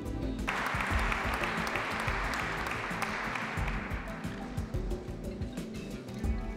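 Audience applause breaking out about half a second in and dying away over the next few seconds, over steady background music.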